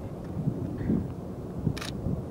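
Wind rumbling on the microphone, with one short click from the Nikon D300S DSLR's shutter near the end.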